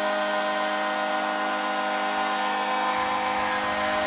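Arena goal horn sounding one long, steady, unchanging chord after a home goal.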